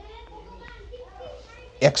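Faint, distant children's voices in the background, then a man's voice says "x" near the end.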